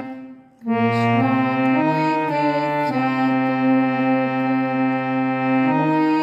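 Harmonium played in held, reedy chords. The sound breaks off at the start and dies away for about half a second. A new chord then comes in, and the notes change every half second to a second as the tune moves on.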